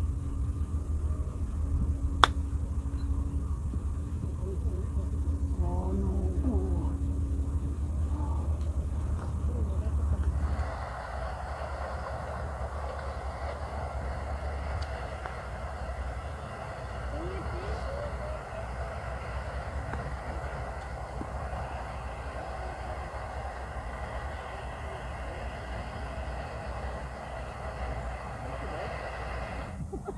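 A golf iron striking the ball once, a single sharp click about two seconds in, over low wind rumble on the phone microphone. From about ten seconds in, the sound changes to a quieter steady outdoor background with faint voices.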